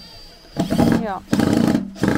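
Cordless drill driving screws through a perforated metal mending plate into a wooden chair seat: two loud runs of about half a second each, the first about half a second in and the second just past a second.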